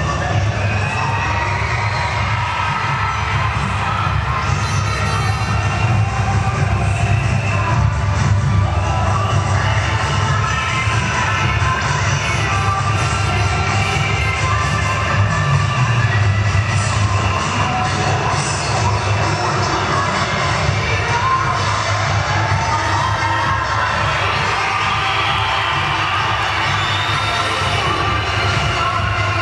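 Crowd cheering and shouting over loud cheer-routine music with a heavy, steady bass.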